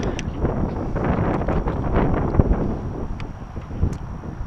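Gusty wind buffeting the camera microphone, a loud rumbling noise that rises and falls, with a few small clicks as the transmitter strap is handled.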